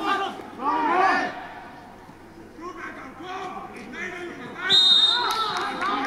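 Field sound of a football match: players shouting and calling to one another on the pitch, then a short, high referee's whistle blast about five seconds in.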